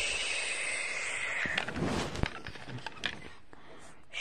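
A breathy hiss for about a second and a half, then a run of scattered clicks and knocks from a plastic toy figure being handled close to the microphone.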